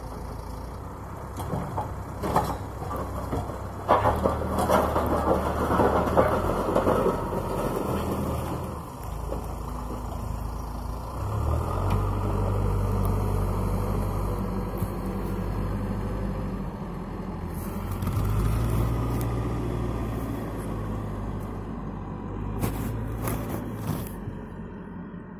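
Backhoe loader's diesel engine running under load, its engine speed rising and falling several times as it works. Its front bucket scrapes and clatters through piled rubbish, loudest a few seconds in, with a few sharp knocks.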